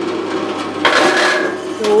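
7-tonne electric log splitter's motor running with a steady hum, with a loud harsh burst of noise for about half a second, about a second in, as the levers are worked. The machine is faulty: once the motor is running it's unhappy.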